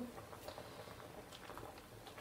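Faint, soft splashing and scraping of a metal skimmer working through a pot of cooking split-pea soup, skimming the foam off the top.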